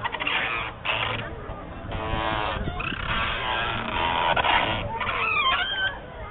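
Noisy outdoor din of children's voices around a spinning chain-swing merry-go-round, with a high, wavering squeal from about five seconds in.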